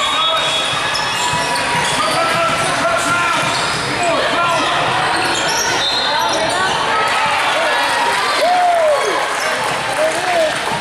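Basketball game on a hardwood gym court: the ball bouncing, sneakers squeaking in short gliding chirps, with a loud squeak near the end, and players and spectators calling out, echoing in the hall.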